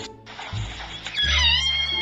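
A pot-bellied pig gives one high-pitched squeal, about a second long, starting just past halfway, over background music.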